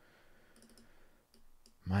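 A few faint, short clicks of a computer mouse as a glyph is selected on screen, over quiet room tone. A man's voice starts right at the end.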